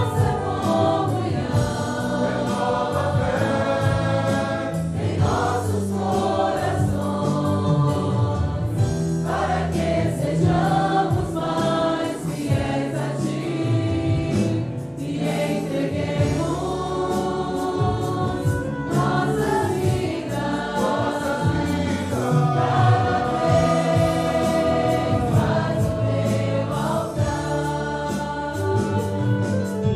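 A church congregation singing the chorus of a hymn in Portuguese together, many voices in unison with musical accompaniment, continuous throughout.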